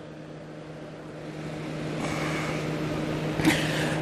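A pause in speech filled by a steady low hum, with a rushing background noise that swells over the last couple of seconds.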